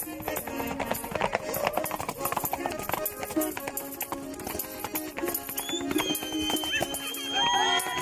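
Horses' hooves clip-clopping as they trot and canter on packed earth, over background music that runs throughout.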